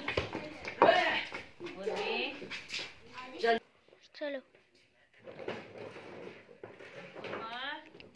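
Voices talking and calling out in short bursts, with a brief lull about halfway through.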